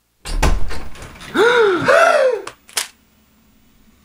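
A sudden loud thump, then a man yelling loudly in two rising-and-falling cries: a jump scare.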